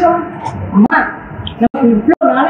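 A woman's voice crying out in a wavering, whimpering pitch, cut off twice for an instant near the end.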